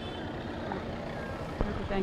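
Street background noise with traffic, a steady hum with faint high tones, and a soft knock about one and a half seconds in.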